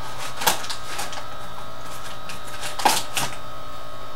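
Sharp clicks of small cosmetic items being handled, one about half a second in and a louder, slightly ringing one near three seconds in, over a steady hiss and a faint constant whine.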